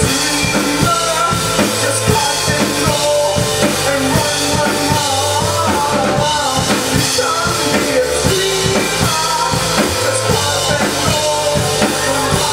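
A live rock band playing, with the drum kit to the fore: kick and snare keep a steady beat under electric guitar and a wavering melody line.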